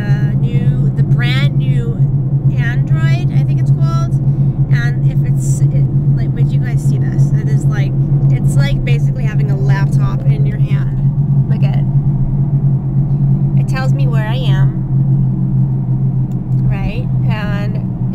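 Steady low hum of a car heard from inside the cabin, running evenly under a woman's talking.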